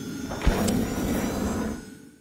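Logo sting sound effect for an animated end card: a whoosh that lands on a sudden low thump about half a second in, then a noisy tail that fades out near the end.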